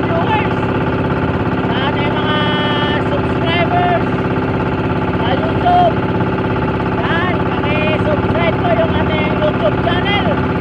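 Small fishing boat's engine running steadily with an even, rapid beat, and a man talking over it.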